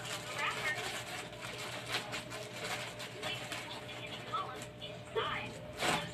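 Light handling noise of cotton wool being torn and pressed into a clear plastic container, with small plastic clicks, over faint voices in the background and a steady low hum. A short, louder sound comes just before the end.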